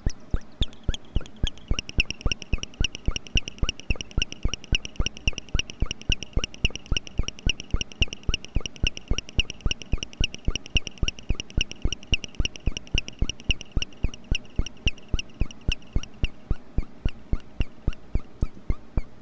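MFOS Noise Toaster DIY analog synthesizer playing rapid repeating blips, about four or five a second, each a short downward chirp. A steady high tone joins them about a second and a half in and fades out near the end as the knobs are turned.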